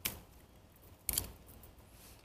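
Scissors snipping through the woody stem of an elephant's bush (Portulacaria afra) cutting: two short, sharp snips about a second apart.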